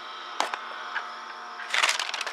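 Handling noise from a handheld camera being moved and adjusted: a sharp click about half a second in, a faint tick later, and a rustle near the end, over a faint steady hum.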